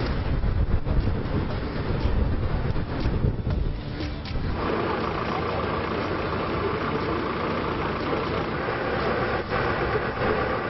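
Outdoor street ambience with vehicle engines idling under a low rumble. It changes abruptly about four and a half seconds in to a busier, more even background.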